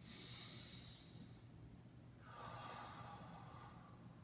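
A man breathing audibly, faint: one long breath at the very start lasting about a second and a half, then a second, lower-pitched breath from about two seconds in.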